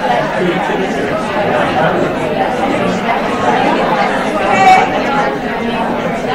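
Many people talking at once in a room, overlapping conversations with no single clear voice. One voice rises louder about three-quarters of the way through.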